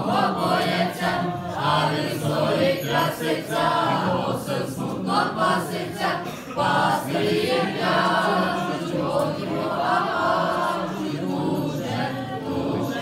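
A small group of mostly male voices singing a Christmas carol (koliada) together, with long held notes.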